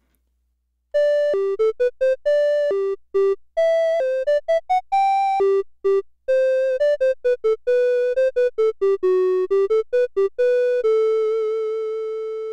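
Behringer System 55 modular synthesizer playing a filterless recorder-like voice: a 921B oscillator's triangle wave through a VCA shaped by a 911 envelope, with vibrato from a second 921 oscillator. A quick melody of short, clean pitched notes begins about a second in and ends on a long held note with a gentle waver.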